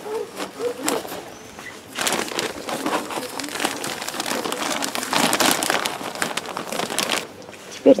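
Potting substrate pouring out of a plastic bag into a plastic bowl, the bag crinkling as it is tipped; a dense rustling, hissing pour from about two seconds in until shortly before the end.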